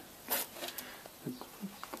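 A quiet pause between spoken words: a short hiss about a third of a second in, a few faint light clicks, and a brief low murmur of voice in the second half.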